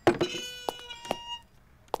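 Wooden swinging half-doors creaking on their hinges as they are pushed open: a squeal of several held pitches with a few knocks, fading out about a second and a half in.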